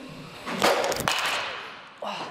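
A 32-inch DeMarini The Goods BBCOR bat, alloy-barrelled, hitting a baseball: a sharp crack of contact just over half a second in, followed by a second knock about a second in as the ball strikes the cage.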